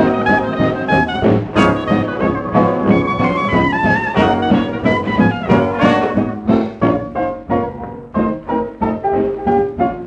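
1928 jazz dance-band fox-trot played from a 78 rpm shellac record: the full band with brass plays, thinning about six seconds in to a lighter passage over a steady beat.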